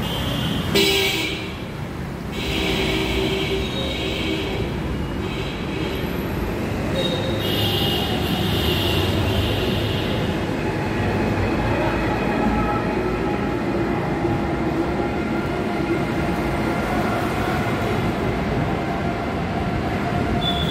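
Road traffic passing, with vehicle horns honking several times in the first half, the longest lasting about two seconds.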